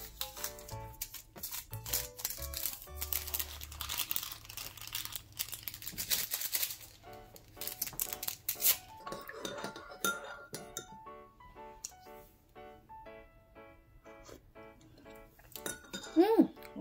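Background music over the crinkle and tearing of paper sweetener packets being opened and poured into a mug, with light clinks of a metal spoon against the ceramic.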